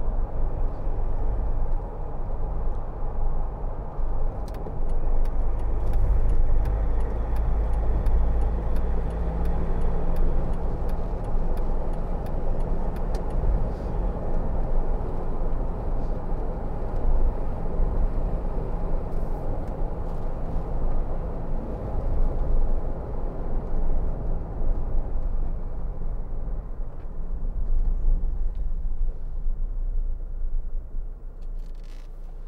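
Cabin noise inside a 2009 Jeep Wrangler 2.8 CRD turbodiesel on the move: a steady low rumble of road, wind and engine.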